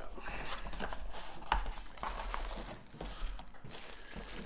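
Cardboard fishing-reel box being opened by hand: rustling and scraping of the box and its flaps with many small clicks and one sharper tap about a second and a half in.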